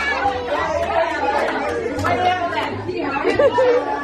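Many children talking and calling out over one another: busy party chatter, with no single voice standing out.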